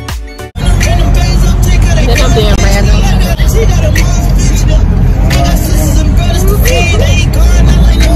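Loud, steady wind buffeting and road rumble inside a moving car with the window open, starting suddenly about half a second in, with a woman's voice over it. Music plays briefly before the rumble starts.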